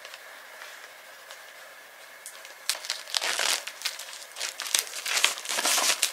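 Plastic shrink-wrap on a vinyl record sleeve crinkling and tearing as it is picked at and peeled off by hand. It is faint at first, then comes in louder, irregular crinkles from about halfway through.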